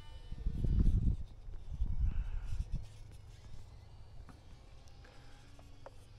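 Low rumbling noise on the microphone in two spells, each about a second long, one near the start and one about two seconds in, over a faint outdoor background.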